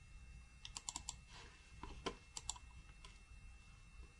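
Faint, irregular clicking of a computer mouse and keys, about ten quick clicks in the first three seconds, while a picture is inserted into a document.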